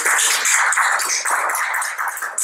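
Audience applauding: a dense, steady patter of clapping.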